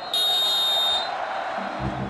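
Referee's whistle giving one long blast, the long last note of the final whistle, which follows two short blasts. Low steady music comes in near the end.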